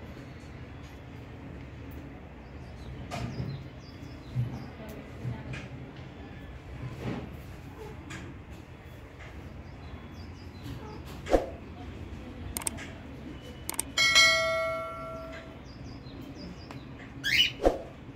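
A bell struck once about three-quarters of the way through, ringing out and fading over a second and a half. Scattered light knocks sound over a steady background hiss, and there is a brief high chirp near the end.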